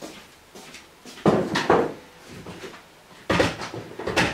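Knocks and clatter of household objects being handled, in two loud clusters: one about a second in and another near the end.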